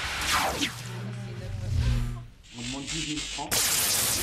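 Electrical sparking from wiring shorted by an American plug forced into a European outlet: crackling sparks, then a steady low electrical buzz, then a sudden loud burst about three and a half seconds in as the wiring flares.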